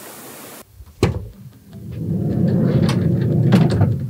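A camper van's sliding side door: a clunk about a second in as it unlatches, then a low rumble with small clicks as it rolls open along its track, growing louder toward the end.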